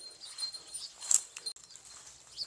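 Cattle grazing on dry grass: faint scattered rustling and crunching, with one sharper crunch about a second in.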